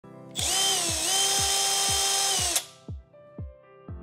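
Milwaukee M12 right-angle impact wrench spinning freely off a fastener: the trigger is held for about two seconds, giving a steady high motor whine that dips briefly in pitch, then the tool cuts off sharply. Background music with a steady beat about twice a second plays throughout.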